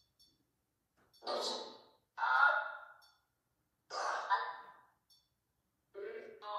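A person's voice: three breathy sighs or murmurs, one after another about a second apart, with a word spoken among them.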